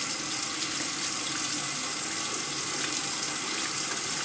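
Bathroom faucet running steadily into the sink.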